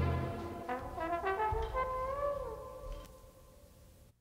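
The end of a Latin big-band salsa track: the band's last full chord dies away, then a lone brass horn plays a short trailing phrase of a few rising notes and a held note that bends, fading out.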